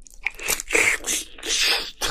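Close-miked biting and chewing of a mouthful of spicy braised seafood (haemul-jjim), wet and crunchy, in two loud swells: one about half a second in and one near the end.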